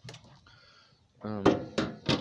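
Mostly speech: a hesitant 'um', with two sharp knocks about a second and a half in, over a quiet stretch of faint handling noise.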